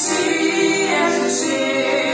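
Three women singing a hymn together in harmony, with held notes, accompanied by a piano accordion.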